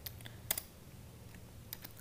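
A few keystrokes on a computer keyboard: one sharper key press about half a second in, then a few light taps near the end.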